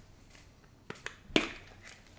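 Quiet room with two small clicks, then a single sharp knock about a second and a half in, from a metal Funko Soda can being handled.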